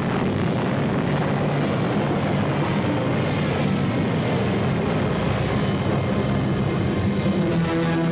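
A loud, steady rumble laid over film of an atomic bomb explosion as its sound, mixed with low orchestral music that swells into held chords near the end.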